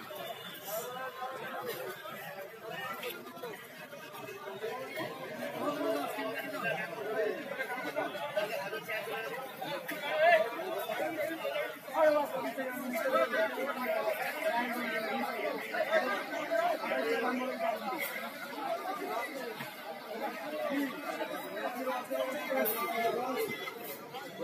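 Many voices talking at once, the overlapping chatter of buyers and sellers at a busy produce market, getting somewhat louder about halfway through.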